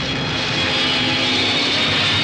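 Film trailer soundtrack: a steady, dense roar with a few held tones running through it.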